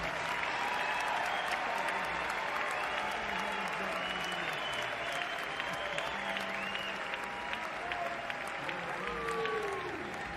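Live concert audience applauding and cheering as a song finishes. Whistles rise and fall above the clapping.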